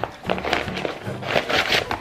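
Mailer envelope rustling and crinkling in the hands as it is torn open and a small cardboard box is pulled out, over background music.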